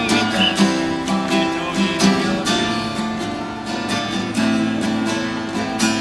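Acoustic guitar strummed in a steady rhythm, an instrumental passage without singing.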